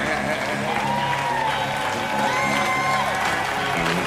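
Live gospel music from a band with vocals, played in a large hall. Long held notes slide into and out of pitch over a steady accompaniment, with the audience applauding and cheering underneath.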